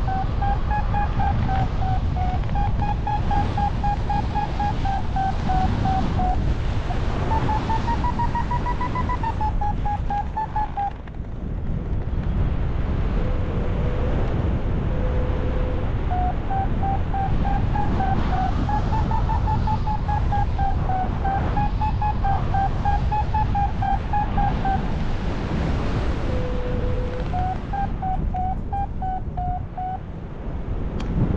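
A paragliding variometer beeping rapidly, its pitch rising and falling with the climb rate, the sign of flying in lift; the beeping stops for a few seconds near the middle and again near the end, with a few lower, longer tones in those gaps. Steady wind noise on the microphone runs underneath.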